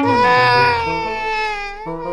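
A baby crying: one long, loud wail that starts suddenly and sinks slightly in pitch, with a fresh cry beginning near the end.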